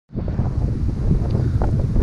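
Wind buffeting the camera's microphone, a loud, steady low rumble.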